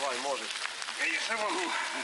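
Outdoor race-course sound: voices calling out briefly, near the start and again about a second and a half in, over a steady noisy hiss as a mountain bike rides past on a muddy dirt track.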